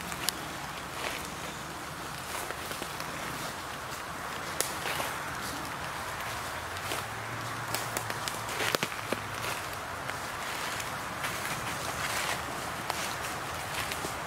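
Footsteps walking through dry leaf litter on a forest floor: irregular short crunches and rustles over a steady background hiss.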